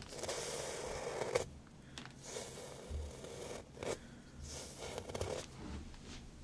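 A wooden comb drawn through hair close to the microphone in four scraping strokes: one long stroke at the start, then three shorter ones.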